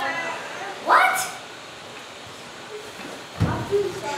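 A child's voice gives a loud, rising, dog-like yelp about a second in, amid children's voices. About three and a half seconds in comes a heavy thud on a stage floor as a boy drops onto his hands and knees.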